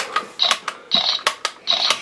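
Small plastic toy camera being handled, with its buttons clicked: a run of sharp plastic clicks and three short rattles about half a second apart.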